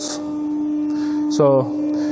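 A steady hum, one constant low tone with a few overtones above it, holding unchanged throughout.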